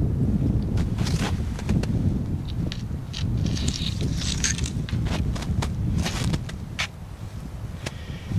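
Crunching and scraping in deep snow as a stick is pushed down into it to gauge the depth, a series of short sharp crunches and clicks over a steady low rumble of wind on the microphone.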